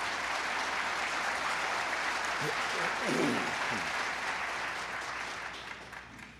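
Audience applauding steadily, then dying away near the end.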